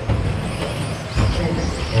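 1/10-scale electric RC stadium trucks with 13.5-turn brushless motors racing on an indoor track: high motor whines rising and falling over tyre noise, with a dull thump a little past a second in, as from a truck landing off a jump.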